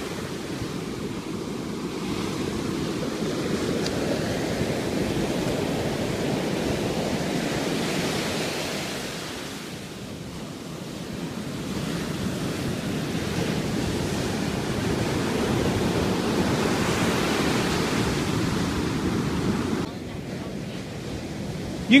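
Ocean surf breaking on a sandy beach: a continuous wash of waves that swells and eases, dipping about halfway through, with some wind on the microphone.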